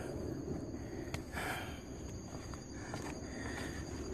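Faint footsteps and breathing of a person walking up to the camera, with a sharp click a little over a second in.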